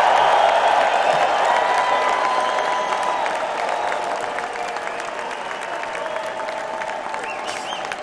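A large arena crowd applauding and cheering, slowly dying down.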